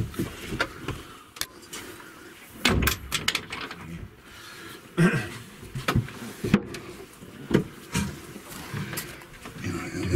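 Irregular knocks and thumps with rubbing and handling noise, loudest in a cluster about three seconds in and again around five and six seconds in, as a handheld camera is carried past wooden panelling.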